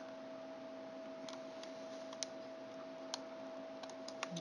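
A few faint, scattered clicks and taps as fingers work a flat ribbon cable into its connector on a laptop board, over a steady faint hum.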